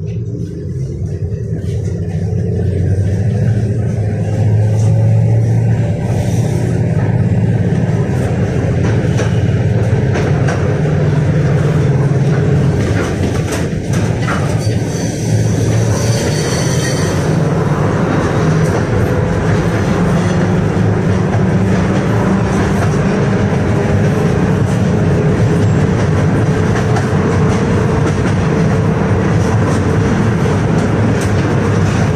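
Interior of a KTM-5M3 (71-605) tram with DK-259G3 traction motors pulling away and gathering speed. The running noise grows louder over the first few seconds while a motor whine rises in pitch, then the tram runs steadily along the rails. About halfway through, a brief higher-pitched sound comes as another tram passes alongside.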